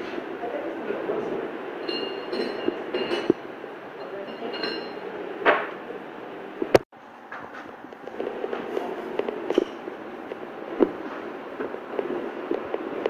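Indistinct murmur of voices with scattered clinks and knocks, as of goods being handled. About seven seconds in there is one sharp click followed by a brief drop-out.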